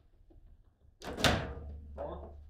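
One loud bang on a foosball table about a second in, from the ball being struck hard in play, ringing briefly as it dies away.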